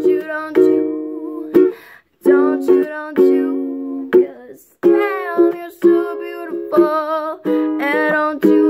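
Ukulele strumming chords in a steady rhythm, with a woman's voice singing a wavering, wordless melody over it.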